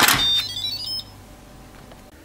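Instant Pot Ultra Mini pressure cooker lid turned shut with a clunk, then the cooker's short electronic chime of several quickly rising notes, the signal that the lid is closed and locked.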